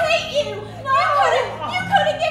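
Women wailing and crying out, voices overlapping in long, high, sliding cries, as in mock labour pains, over a low steady hum.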